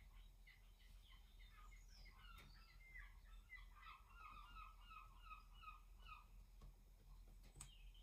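Near silence with faint bird chirping: scattered short notes, then a regular run of falling notes, about three a second, in the middle. A single soft click near the end.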